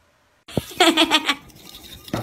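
Salt shaker being shaken over a table, a scratchy rattling that starts suddenly about half a second in, with a short burst of a voice laughing.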